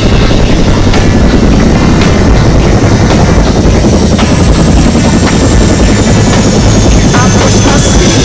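Landed turbine helicopter running at close range, its rotor and engine making a loud, steady noise. A thin high whine eases slightly lower in pitch over the last few seconds.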